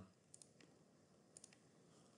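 Near silence with a few faint clicks from working a computer: a close pair of clicks about a third of a second in and another pair about a second later.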